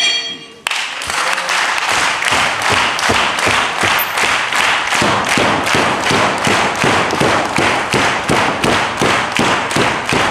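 A wrestling ring bell rings briefly and cuts off about half a second in. Then a crowd claps in steady unison, about three claps a second.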